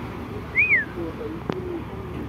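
A single short bird chirp that rises and then falls in pitch, over a steady low rumble, with a sharp click about a second and a half in.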